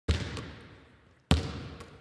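A basketball bouncing twice on a gym floor, about a second apart, each bounce echoing and fading away.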